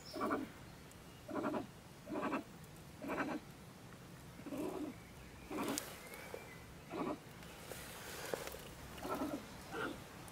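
A female stone marten (beech marten) ranting: short calls repeated about once a second, the agitated alarm calling of a marten that feels disturbed near her den.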